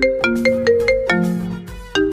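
Mobile phone ringtone playing a quick melody of short, bell-like notes, several a second.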